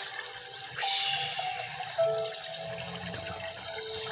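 Soft background music of held notes, over a rush like running water that gets louder about a second in.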